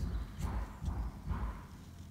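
A few soft knocks and rustles of paper pieces being handled and pressed down on a tabletop, spaced about half a second apart and fading near the end.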